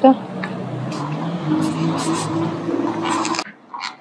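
A steady low engine hum over street noise, with a few light clicks, cutting off suddenly about three and a half seconds in.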